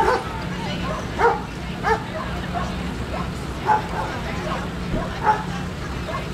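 A dog barking in short, high calls, about five times at irregular intervals, over a steady low hum.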